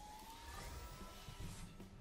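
Faint electronic sound effect from the Zap Attack online slot game, marking the free-spins upgrade: thin tones gliding slowly upward in pitch over a quiet low background.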